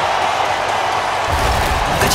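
Steady arena crowd noise from many voices, then broadcast music with a strong low bass comes in about two-thirds of the way through, as the coverage cuts to a break.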